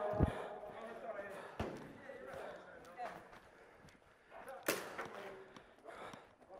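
Faint voices in the background, with a few scattered short knocks and a sharp click near the end.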